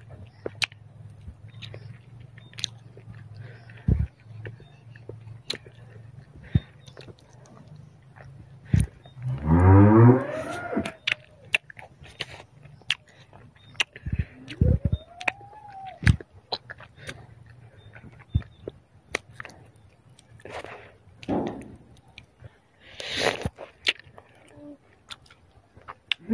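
Close-up chewing and wet mouth clicks of someone eating a ripe, juicy plum-like fruit. A long pitched call rising in pitch comes about nine and a half seconds in and is the loudest sound; a shorter call rising then falling follows about five seconds later.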